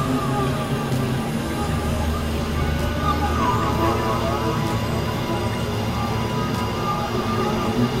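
Dense, continuous experimental electronic music of layered synthesizer drones, with a steady low drone underneath. About halfway through, criss-crossing gliding tones come in.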